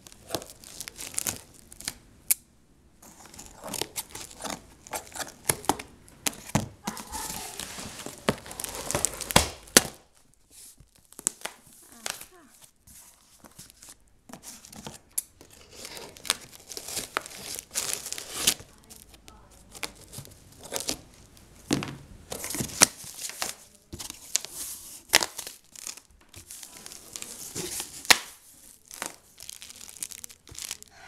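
Packing tape being ripped and peeled off a cardboard box in irregular tearing bursts, with cardboard flaps scraping and crinkling. Plastic wrap crinkles near the end.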